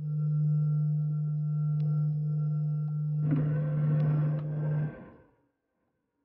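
CT scanner running: a steady low hum with higher tones above it, joined about three seconds in by a whirring rush. Both stop about five seconds in.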